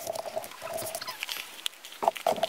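Books being handled: scattered rustling and light knocks and clicks as they are moved and sorted.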